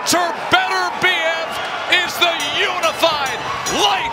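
Several excited voices shouting and whooping over one another in celebration of a knockout, with a few sharp knocks among them.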